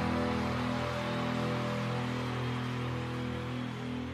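Recorded rock band music: a held final chord ringing and slowly dying away.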